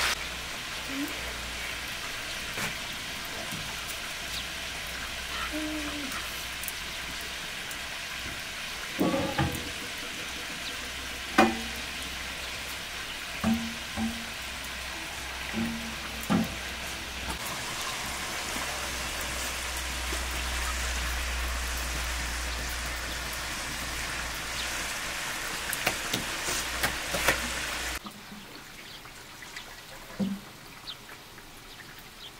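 Whole chickens frying in oil in a large metal pot over a wood fire: a steady sizzle, with a few short knocks and brief low tones in the middle, stopping suddenly near the end.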